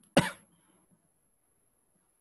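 A man's single short cough near the start.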